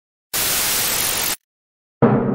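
A burst of TV-style static hiss, about a second long, that starts and cuts off abruptly: an intro sound effect.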